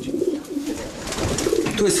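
Racing pigeons cooing in their loft: low, wavering coos.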